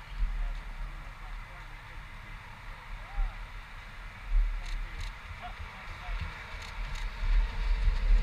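Outdoor ambience: wind gusting on the microphone in low rumbles, over faint steady traffic noise from a nearby road.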